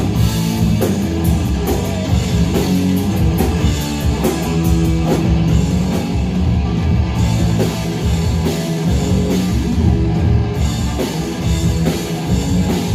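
Live rock band playing an instrumental stretch without vocals: electric guitar, electric bass and drum kit, loud and steady.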